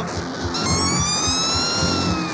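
Lo-fi punk-noise rock band playing between sung lines over a steady beat. About half a second in, a high, piercing held note comes in, rising slightly and falling back.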